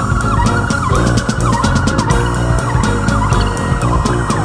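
Instrumental 1970s German progressive rock: bass and drums with regular cymbal ticks, briefly quickening into a fast run near the middle, under a high lead line that slides up and down in pitch.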